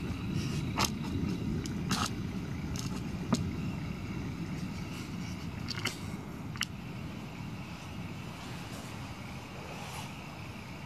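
Distant autumn thunder rumbling and slowly dying away, with a few scattered sharp ticks over it.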